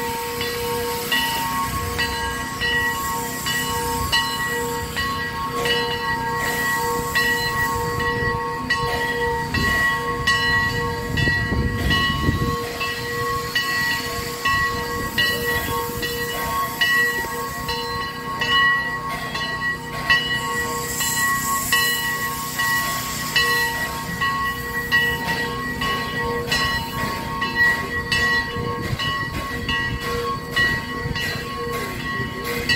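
Steam locomotive with steam up, hissing with a steady multi-tone whine and faint regular ticking while it is slowly turned on a turntable; a low rumble swells about ten seconds in and fades a couple of seconds later.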